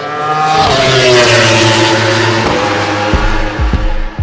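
An engine sound effect: a high-revving engine with a rushing whoosh, its pitch sweeping down as if passing by. About three seconds in, the thumping bass drum of a music track comes in.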